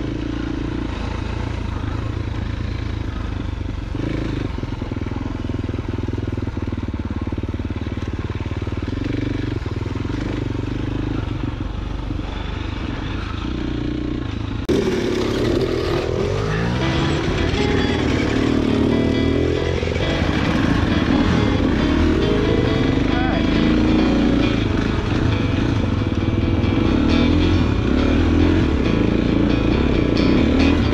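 KTM enduro dirt bike engine running under the rider while trail riding, its pitch rising and falling with the throttle. About halfway through the sound changes abruptly and becomes louder, with repeated revs up and down.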